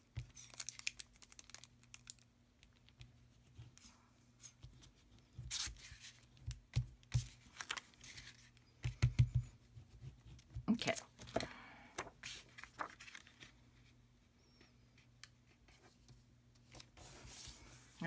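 Cardstock and patterned paper being handled and pressed down on a cutting mat: scattered rustles, light taps and a few soft thumps, over a faint steady low hum.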